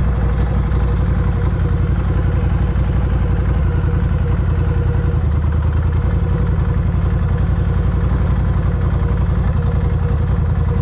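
Motorcycle engine running steadily, heard from the bike as it rides along at low speed.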